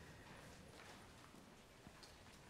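Near silence: room tone of a quiet sanctuary, with a faint soft knock near the end.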